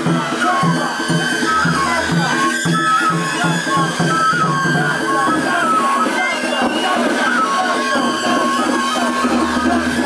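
Japanese festival float music (hayashi): a high flute-like melody of held, stepping notes over a steady drumbeat, with crowd voices beneath.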